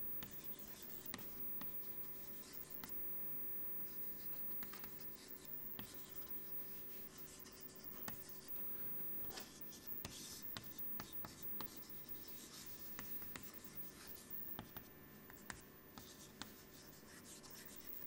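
Chalk writing on a blackboard: faint scratching strokes and light taps as words are written.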